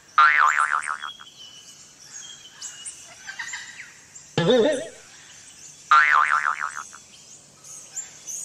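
Short wobbling, boing-like vocal calls voicing two paper finger puppets: a high squeaky one near the start, a low warbling one about four seconds in, and the high one again a moment later. Faint chirping lies underneath.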